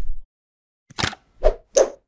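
Logo-animation sound effects: a noisy sound fading out right at the start, then three quick pops about a second in, spaced roughly half a second apart.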